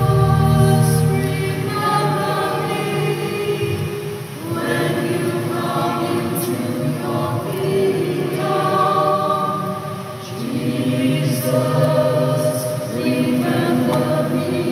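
A choir singing a sacred hymn in sustained phrases, with short pauses between phrases about four seconds and about ten seconds in.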